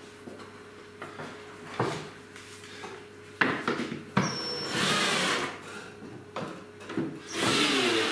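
Cordless drill-driver driving screws into the wooden slats of a flat-pack table frame, in short runs, with knocks and clicks of handling the parts between them.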